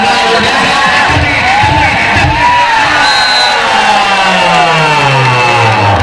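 Large crowd of spectators shouting and cheering over music, with a few low thumps about a second in and a long falling tone near the end.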